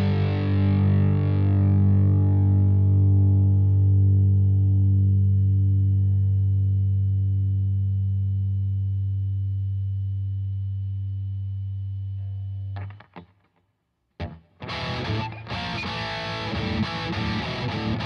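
Modified TTK-2 electric guitar, played through distortion, holding one low note that rings on and slowly fades for about thirteen seconds. It is cut off sharply, and after a brief silence and a single short hit, busy distorted playing starts.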